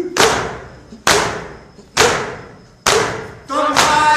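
A crowd of mourners beating their chests in unison (matam): about five loud slaps a little under a second apart, each ringing on in the hall. Voices chanting a noha come back in near the end.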